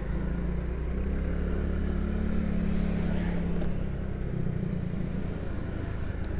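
A motorcycle engine running steadily while the bike cruises, under a steady rush of wind and road noise. Its engine note eases a little after about four seconds.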